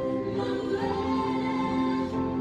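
Slow gospel worship music with a choir singing long held notes.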